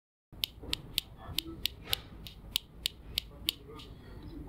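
A finger knocking repeatedly on the screen of a counterfeit G-Shock watch, about a dozen light clicks at three or four a second. It is a plasticky sound, the sign of a resin or plastic screen rather than mineral glass.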